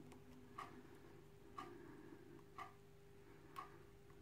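Near silence with faint ticking, evenly spaced at about one tick a second, as from a clock, over a faint steady hum.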